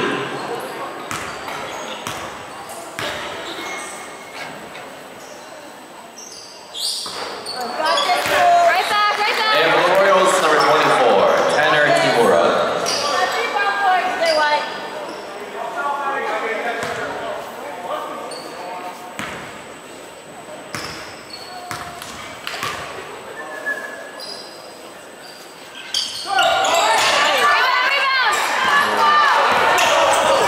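Basketball bouncing on a hardwood gym floor during free throws, with spectators' voices and shouts echoing in the large hall. The voices swell about seven seconds in and again near the end.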